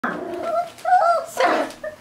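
Young puppies whining, a few short high cries that rise and fall in pitch.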